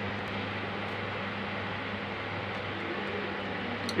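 Steady background hum and hiss from a running machine, with a low buzz that holds level and pitch throughout.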